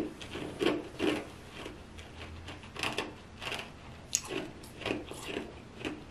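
Ice cubes being crunched and chewed in a person's mouth, a crisp crunch about every half second.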